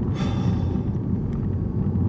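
Steady low road and drivetrain rumble inside the cabin of a moving 2014 BMW i8, with a short hiss about a quarter of a second in.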